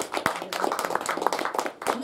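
A small audience applauding, a dense patter of hand claps in a small room.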